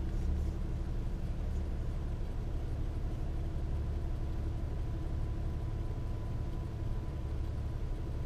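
Car engine idling while stopped, a steady low rumble heard from inside the car, with a faint steady high tone over it.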